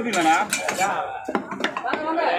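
A steel knife blade striking a wooden log chopping block several times as a large fish is cut up, sharp knocks mostly in the second half, with men's voices over them.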